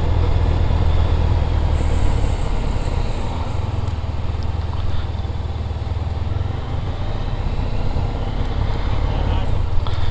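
Motorcycle engine running with road and wind noise, heard from on the bike as it rides at town speed. The low engine hum is strongest in the first few seconds, then eases a little.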